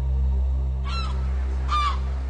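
Two short gull calls, a little under a second apart, over a low, steady music drone.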